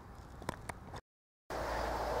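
Faint outdoor background noise with two small clicks about half a second in, then a half-second of dead silence from an edit splice, after which a steadier low rumble of outdoor background resumes.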